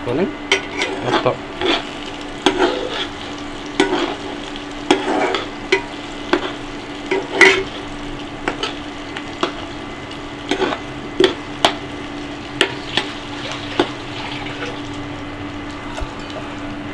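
Chopped onions and curry leaves frying in a metal kadai with a steady sizzle, while a steel slotted spoon stirs and scrapes them, clinking against the pan many times, loudest about halfway through.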